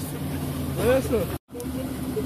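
Lada Niva engine running steadily at low revs while the car sits stuck in mud, with a short shout about a second in. The sound drops out completely for a split moment just before halfway.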